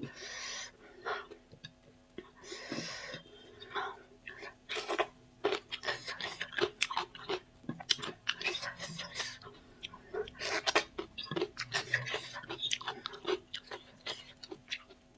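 A person eating right at the microphone: wet chewing and lip smacks with many sharp mouth clicks, and two breathy hisses in the first few seconds.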